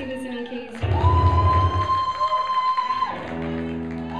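A live band playing, with a deep bass note and a long held high note from about one second in until three seconds.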